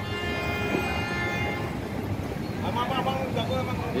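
A vehicle horn sounding one steady note for about two seconds, over constant traffic noise.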